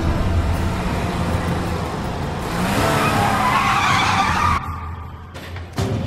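Sports car engine running low, then a tyre squeal with the engine note rising for about two seconds, cutting off suddenly. A sharp thump comes near the end.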